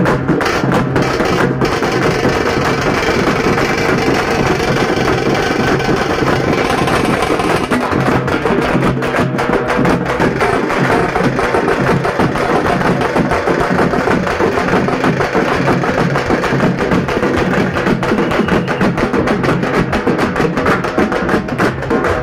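Loud, continuous drum-led music: fast, dense drumming with sharp strokes over steady sustained tones, without a break.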